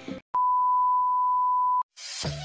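A single steady electronic beep at one high pitch, about a second and a half long, switching on and off abruptly like an edited-in bleep tone.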